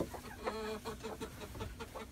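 Chickens clucking, with one short pitched cluck about half a second in and a few fainter ones after it.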